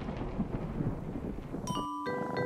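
Thunder rumbling and slowly fading. Near the end a light chiming tune of struck bell-like notes begins.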